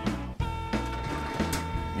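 Background guitar music, with a mechanical sliding sound from a residential refrigerator's bottom freezer drawer being pulled open.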